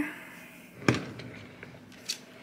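A dresser drawer being pushed shut, with one sharp knock about a second in.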